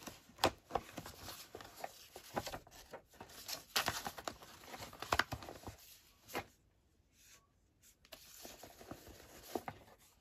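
Paper scraps rustling and crinkling as a stack of ephemera is leafed through by hand, in short irregular rustles. It goes quieter for about two seconds past the middle, then picks up again near the end.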